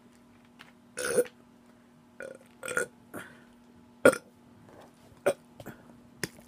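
A woman burps loudly about a second in, followed by several short, sharp mouth smacks and clicks.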